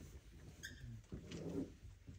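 Dry-erase marker writing on a whiteboard, faint, with one short high squeak of the felt tip about half a second in.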